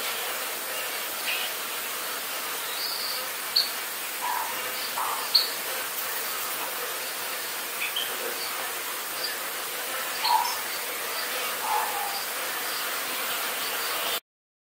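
Many bees buzzing among the blossoms of a flowering tree, a steady even drone, with short bird chirps every second or two over it.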